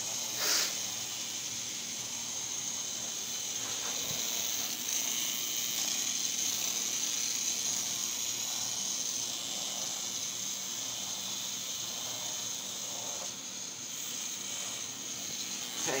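Small electric motor of a toy robot spider whirring steadily as it crawls, with a short burst of noise about half a second in.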